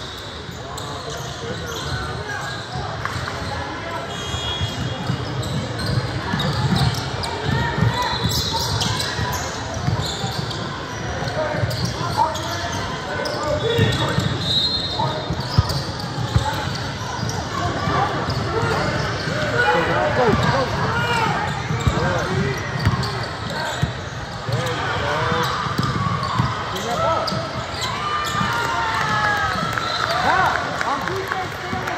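Busy gym during a basketball game: many voices of spectators and players talking and calling out over one another, with a basketball bouncing on the hardwood court and a few sharp knocks around the middle, all echoing in the large hall.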